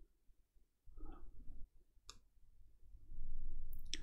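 A quiet moment broken by one sharp click just after two seconds in, with faint low rustling in the last second.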